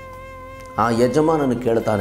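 A man speaking Kannada in a sermon, starting about a second in after a short pause, over soft background music holding a steady note.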